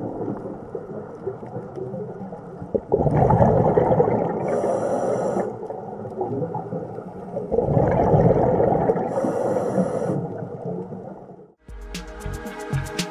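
Muffled underwater noise picked up by a submerged camera, with two louder rushing surges lasting a few seconds each, about three and seven and a half seconds in, and a faint fizz of bubbles at their peaks.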